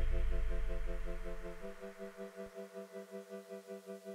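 Background music: sustained synth chords pulsing quickly and evenly, over a deep bass note that fades away in the first two seconds.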